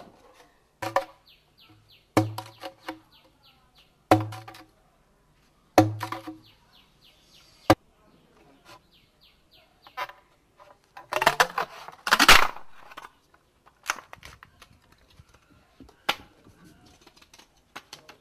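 Bamboo being split into small pieces: sharp knocks with a short hollow ring, about every two seconds, then a longer, louder burst about eleven seconds in.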